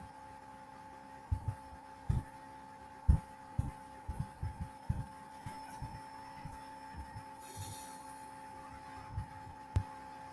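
Keyboard keystrokes picked up by the computer's microphone, heard as irregular soft, dull taps while a name is typed, over a faint steady electrical hum. A single click comes near the end.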